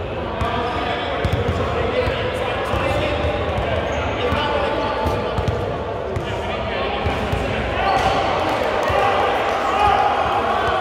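A basketball bouncing on a hardwood gym floor around a free throw, with several short knocks, under indistinct voices of players talking in a large gym hall.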